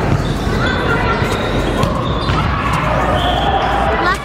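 Live sound of an indoor volleyball rally in a large, echoing gym: the ball being struck, with players' voices calling out over the hall's din.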